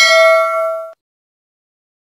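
A single bright bell-like ding sound effect, ringing with several clear tones, then cutting off abruptly just under a second in. It is the chime of a subscribe-button animation as the notification bell icon is clicked.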